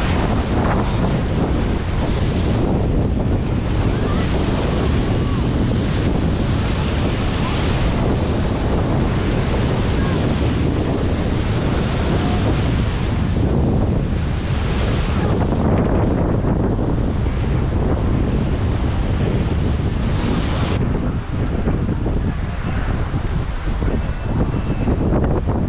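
Wind buffeting the microphone with a steady low rumble, over waves washing onto a beach, the hiss of the surf swelling and fading every few seconds.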